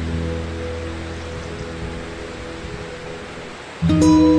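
Soft relaxation music: an acoustic guitar chord rings out and slowly fades over a steady hiss of water sound, and a new chord is strummed just before the end.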